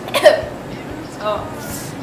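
Brief human vocal sounds, not words: a short sharp burst of voice about a quarter second in and a short pitched sound a little past one second, over steady room noise.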